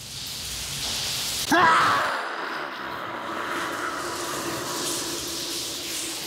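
A rushing, hissing noise fades in, and about a second and a half in a single long note starts with a short upward swoop, then holds steady over the hiss.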